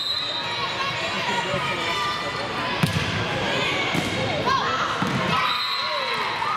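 Volleyball rally in a gymnasium: the ball is struck with sharp slaps, the loudest about three seconds in, then again about a second and a second and a half later, over steady voices and shouts from players and spectators.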